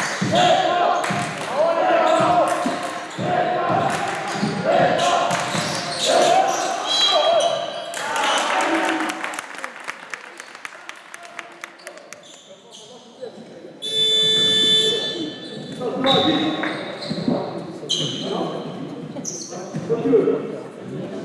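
Basketball game sounds in an echoing gym: the ball bouncing on the court and players calling out. Around the middle, a buzzer sounds steadily for about a second and a half.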